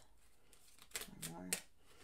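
A deck of Kipper cards being shuffled by hand: a few light clicks and taps of the cards, mostly in the second half.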